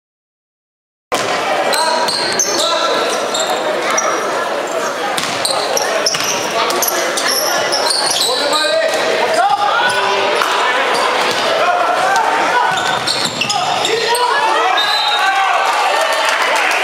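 Live indoor basketball game sound starting about a second in: the ball bouncing on the hardwood court, sneakers squeaking, and players and spectators calling out, echoing in a large sports hall.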